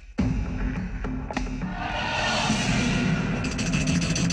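Film background music that starts abruptly after a brief dip, over steady low tones, with a swelling wash of high noise about halfway through and a run of quick ticks near the end.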